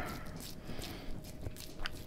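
Hands squeezing a bread-stuffed artichoke, packing the stuffing in between its leaves: faint soft crackling and rustling with a few small clicks.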